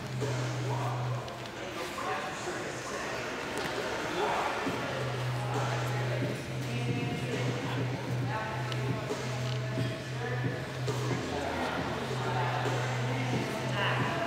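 Indistinct chatter of spectators and coaches echoing in a large gym hall, over a low steady hum that drops out for a few seconds near the start.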